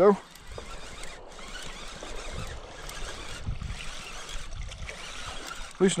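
Fishing reel being cranked steadily as a hooked bass is brought in toward the bank, a continuous even whir with a few low bumps in the middle.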